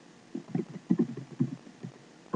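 Computer keyboard typing: a quick, irregular run of about a dozen key clicks.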